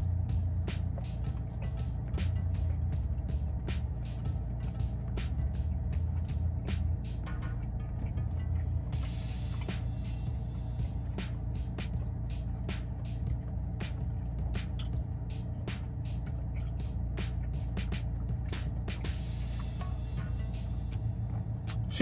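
Close-up chewing of a chili cheeseburger with crispy onion strings and a toasted bun: a long, irregular run of crunchy clicks, two or three a second, over a steady low hum.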